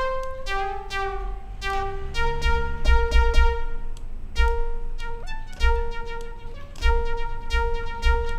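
DRC software synthesizer in mono mode playing a high sawtooth lead through a resonant band-pass filter: a line of short, repeated notes. A tempo-synced one-eighth delay with its feedback being raised makes each note echo, and low thuds sound underneath.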